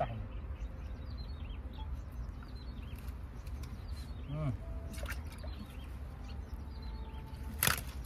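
Small birds chirping again and again over a steady low rumble, with one sharp knock near the end.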